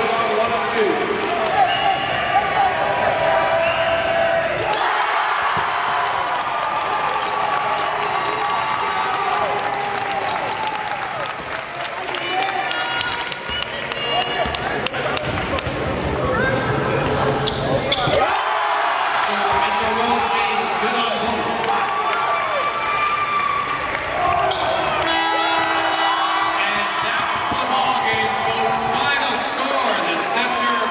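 Live gym sound of a basketball game: a ball bouncing on the hardwood amid steady spectator voices and shouting, with the sound changing abruptly at a few edits.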